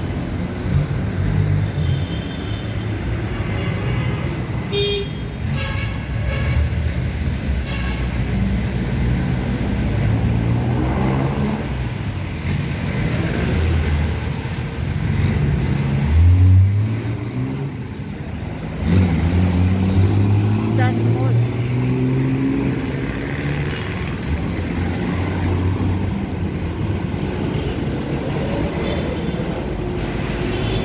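Street traffic: vehicle engines running and passing close by, with one loudest low rumble about halfway through and an engine rising in pitch as it speeds up soon after. There are short horn toots in the first few seconds and voices of passers-by in the background.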